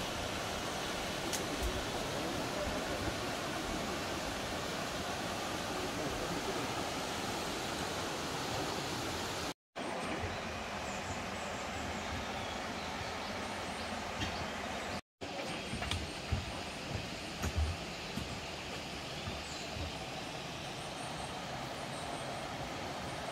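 Steady rush of water from a mountain stream running over rocks. The sound cuts out twice, briefly, and a few low thumps come in the second half.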